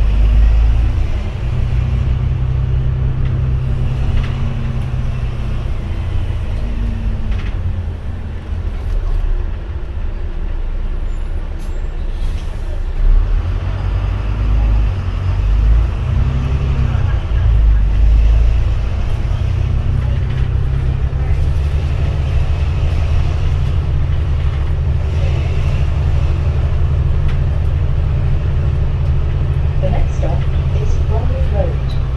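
Double-decker bus running, heard from the upper deck: a steady low engine and drivetrain drone whose pitch rises and falls as the bus slows and pulls away, most noticeably in the middle of the stretch.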